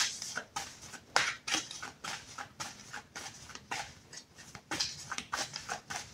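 Tarot cards being shuffled by hand: a run of short, irregular rustles and slaps, a few per second.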